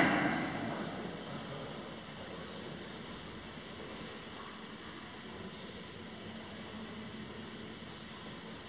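Faint, steady hiss of a large hall's room tone while a room full of pupils writes quietly. The echo of a voice dies away during the first second or so.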